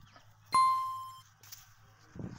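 A single bright electronic ding, a bell-like chime that starts sharply about half a second in and fades out within a second: the notification-bell sound effect of a subscribe-button animation.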